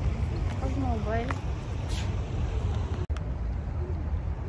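Steady low outdoor rumble, with a person's voice heard briefly about a second in. The sound drops out for an instant about three seconds in.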